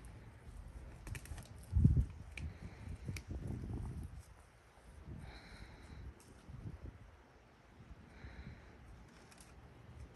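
Soft rustling and handling sounds as butterfly pea flowers are picked off the vine into a bowl, with a dull thump about two seconds in. A bird calls faintly twice, around the middle and again later.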